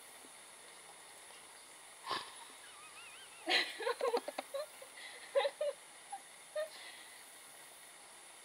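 A single thump about two seconds in, then a young woman laughing in short bursts that die away.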